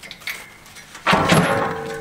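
Aluminium loading ramp clanking against the truck's steel deck about a second in: a sudden metallic clatter that rings on and fades.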